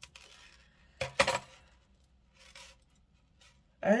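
Metal jewelry clinking: a brass-tone chain necklace with a metal feather pendant handled and set down on a plastic tray, with one sharp clink about a second in and a few faint small rattles after it. A yawning 'oh' comes near the end.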